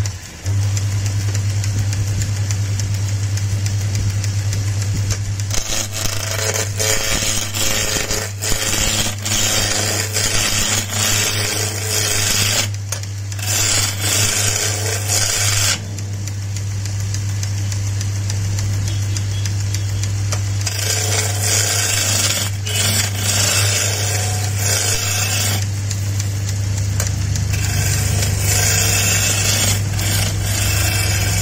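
Wood lathe motor starting and running with a steady low hum. From about five seconds in, a turning gouge bites into the spinning square wood blank, a loud, rough, chattering cutting noise in bouts, pausing briefly, then again from about twenty seconds, as the blank is roughed down to a round cylinder.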